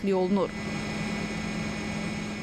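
Steady mechanical running noise with a low hum, as from a tank's engine, after a voice stops about half a second in.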